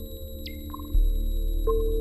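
Live electronic music: steady synthesizer drones with short ringing pings, a high tone that swoops down about half a second in, a deep thump about a second in, and a new held tone entering near the end.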